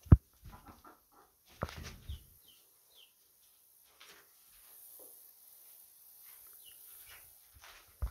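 Chickens in a coop giving a few short, high, falling chirps, with a sharp thump right at the start and some knocks and rustling in the first couple of seconds.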